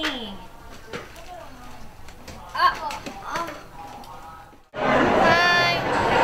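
Quiet, scattered women's voices talking in a small room. About three-quarters of the way through the sound cuts off abruptly, and louder voices follow.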